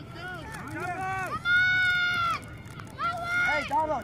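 Several high-pitched voices shouting encouragement to soccer players, overlapping. One long drawn-out shout comes about halfway through, and shorter shouts follow near the end.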